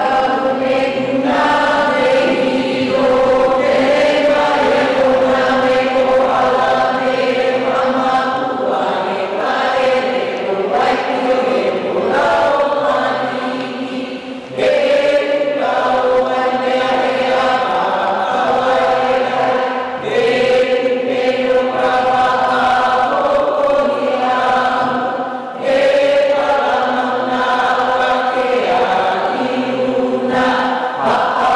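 Voices chanting together in long held notes, in phrases that break briefly about 14 and 25 seconds in.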